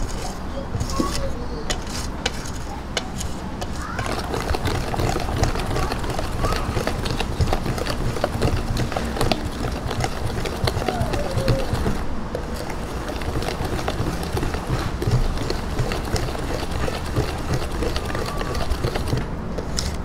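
Wire whisk beating a thin batter in a stainless steel bowl: rapid, continuous clinks of the wires against the metal, with the swish of the liquid.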